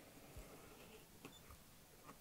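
Near silence with a few faint clicks and a soft low thump about half a second in: a rotary cutter rolling along the edge of fabric on a cutting mat and being handled.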